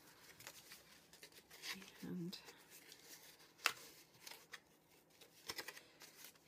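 Textured cardstock being folded and creased by hand: faint rustling of the paper with a few sharp crackling clicks as the tabs are bent up, the loudest about three and a half seconds in.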